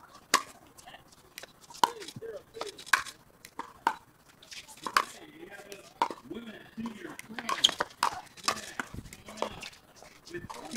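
Pickleball rally: paddles striking a hard plastic pickleball, a run of sharp pops roughly once a second.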